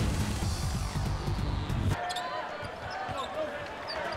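Intro music with a heavy bass beat that cuts off about halfway through. It gives way to basketball game sound: a ball dribbling on a hardwood court, sneakers squeaking and a low crowd murmur.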